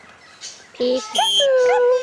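Red-sided eclectus parrot calling: a short pitched note under a second in, then a long, steady, whistle-like note held to the end.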